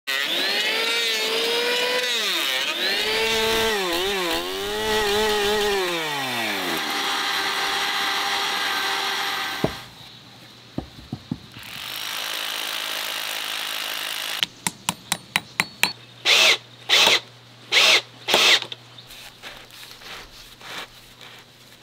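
Handheld electric wood planer running as it is pushed along a plank, its motor pitch dipping and rising with the cut for the first half. A few wooden knocks follow, then a power tool started in a string of short bursts and a few longer runs near the end.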